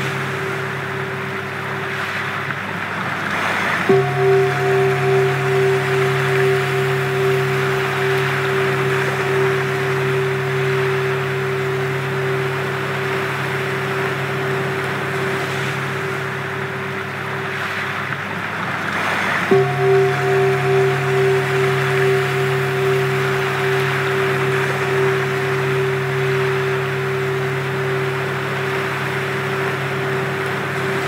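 Sound-healing drone music: steady low sustained tones over a wash of noise. Twice, about four seconds in and again near twenty seconds, a ringing tone comes in sharply and then wavers in slow pulses as it sustains.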